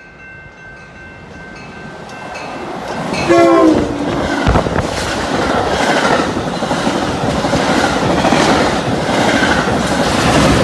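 Metra commuter train of bilevel gallery cars passing at speed: the rumble grows from about two seconds in, a short horn blast sounds about three seconds in, slightly falling in pitch, and then the cars rush past with a steady rattling clatter of wheels on the rails.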